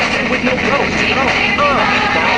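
Car radio playing a song with a voice, heard inside a BMW E36's cabin over steady engine and road noise.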